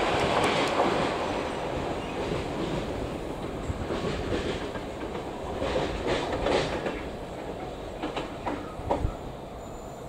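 Freight train wagons rolling away over jointed track, their wheels clacking. The rumble fades steadily as the train recedes, with a few sharper clacks in the second half.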